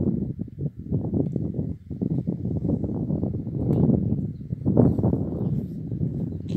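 Irregular footsteps on wet salt crust, over a low uneven rumble of wind on the microphone.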